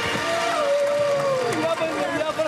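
A long drawn-out cheering shout of joy, held on one pitch for over a second and then sliding down, over fading background music.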